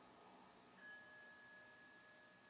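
Near silence, with one faint, clear ringing tone that starts a little under a second in and holds steady for about a second.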